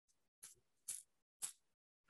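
Near silence with three faint, short bristly ticks about half a second apart: the bristles of a paint-loaded toothbrush being flicked to spatter paint.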